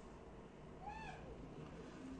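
A faint, short animal-like call about a second in, rising then falling in pitch, over quiet room tone.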